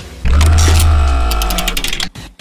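Short musical transition sting for a numbered news segment: a deep bass boom about a quarter second in under a held chord, with a fast run of ticks high up in the second half as it fades.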